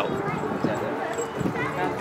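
Indistinct background voices of several people talking.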